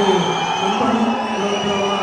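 A large audience cheering, with several long, shrill whistles held over the shouting.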